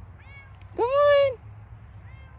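A kitten meowing twice: a faint short meow, then about a second in a loud, longer meow that rises, holds and falls in pitch.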